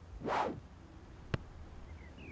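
A short cartoon whoosh, then about a second later a single sharp click, over a faint low hum.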